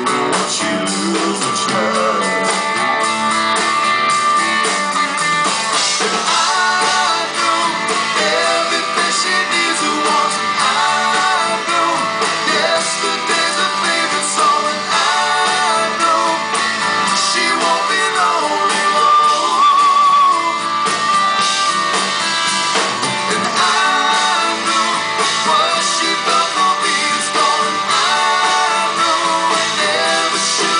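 Live rock band performing a song: a man singing lead into a microphone over electric guitar and bass guitar, heard from the audience as continuous loud music.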